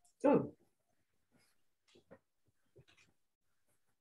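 A dog whining briefly at the start, one short pitched cry falling in pitch, followed by a few faint light taps.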